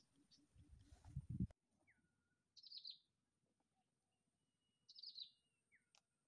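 Small birds calling faintly: two short bursts of rapid high chirps about two seconds apart, with thin downward-sliding whistles between them. Before that, a low rumble swells and cuts off abruptly about a second and a half in.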